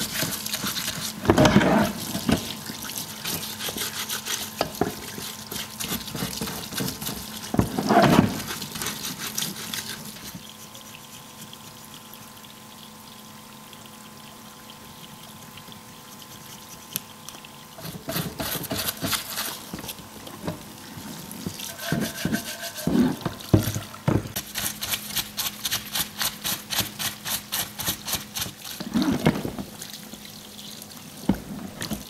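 Cleaning fluid pouring from a parts-washer nozzle over a magnesium Porsche 915 transmission case while a brush scrubs it in bursts of quick strokes. The scrubbing becomes regular, about two to three strokes a second, near the end. There is a quieter stretch in the middle with a faint steady hum.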